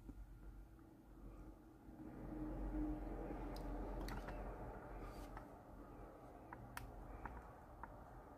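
Small hand-twisted drill (pin vise) boring a mounting hole for a side mirror into a model car body: a faint scraping grind that builds about two seconds in and eases off toward the end, with a few light clicks.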